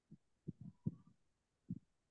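A few faint, dull low thumps, bunched in the first second with one more near the end.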